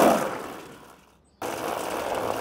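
Cartoon sound effect of a small toy car speeding past: a whoosh that swells and fades over about a second, then, after a brief gap, its motor buzzes steadily.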